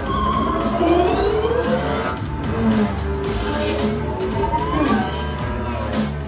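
Action-film soundtrack played loud through home-theater speakers and picked up in the room: score music with a heavy, pulsing bass beat, with rising and falling sliding tones over it.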